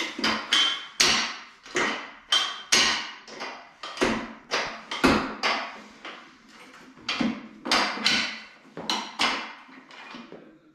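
Steel frame of an adjustable weight bench clanking as its pull-lever pin is worked and the backrest is lowered notch by notch from upright to flat. It is a steady run of sharp metal knocks, about two a second, some of them ringing briefly.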